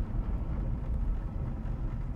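The 1973 Mercedes-Benz 450SEL's 4.5-litre fuel-injected V8 runs at a steady, low, even rumble at low speed as the car makes a tight, slow turn. It is heard from inside the cabin.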